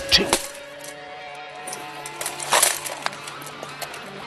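Steel war-hammer blows clanking against plate armour: a strike at the start and a louder one about two and a half seconds in, with a few lighter clinks between, over background music with held tones.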